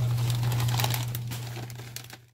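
Plastic snack bag crinkling as it is handled, over a steady low hum; the crinkling fades out near the end.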